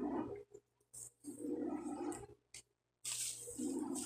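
Rustling of thin scarf fabric being handled and folded, in several short spells with brief dead silences between.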